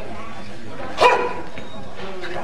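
A dog barks once, sharply, about a second in, over a murmur of crowd chatter.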